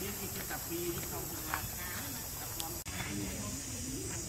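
Faint low voices, wavering in pitch, over a steady high hiss.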